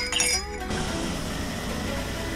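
Background music over a spoon clinking against a coffee mug while stirring. From just under a second in, a steady hiss of water falling from a ceiling rain shower head.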